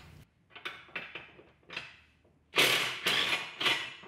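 Hand socket ratchet clicking in short runs as bolts are backed out, the loudest run in the second half.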